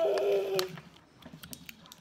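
A girl's drawn-out vocal sound fades out in the first moment. Then come soft, irregular little clicks and crinkles from fingertips picking at the plastic wrapping and stickers of an LOL Surprise ball.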